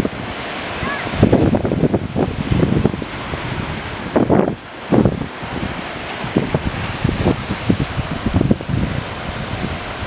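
Surf washing over a rocky shore, with irregular gusts of wind buffeting the microphone.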